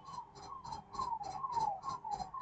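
A rhythmic squeaking chirp, a short falling note repeated steadily about four times a second, with a faint tick on each repeat.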